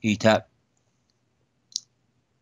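A single short, sharp click about three-quarters of the way through, with silence around it after a brief word of speech.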